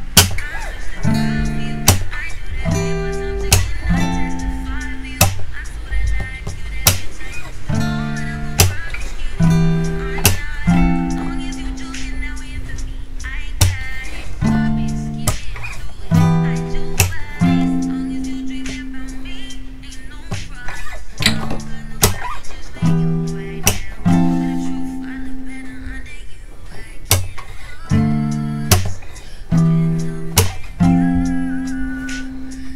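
Steel-string acoustic guitar strumming a slow, repeating progression of D minor 7, E minor 7 and F major 7 chords, each chord ringing a second or two. Sharp percussive hits on the strings fall between the chords.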